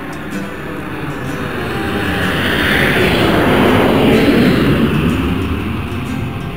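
Jet airliner passing overhead: its engine noise swells to a peak about four seconds in and then fades, with the pitch falling as it goes by.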